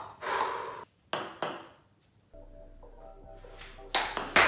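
Celluloid-type table tennis ball bouncing: sharp pinging clicks with a short ring, near the start and twice in quick succession about a second in. From a little past two seconds a faint steady hum with a few held tones.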